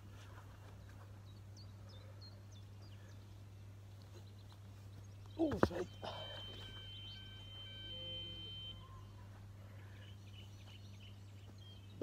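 Quiet outdoor ambience with a steady low hum and faint bird chirps. About halfway through comes one short, loud voice-like sound with a falling pitch, followed by a thin steady high tone lasting about two and a half seconds.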